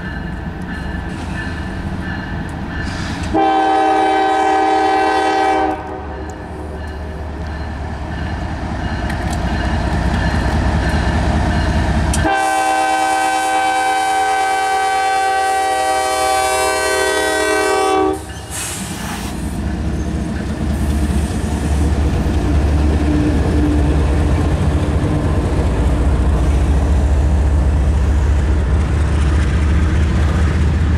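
Norfolk Southern diesel locomotive sounding its multi-note air horn twice, a short blast a few seconds in and a long one of about six seconds in the middle, warning for the road crossing. The locomotive then rumbles past, and double-stack container cars roll by with a steady rumble that grows louder.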